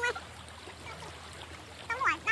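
Shallow river flowing: a soft, steady rush of water.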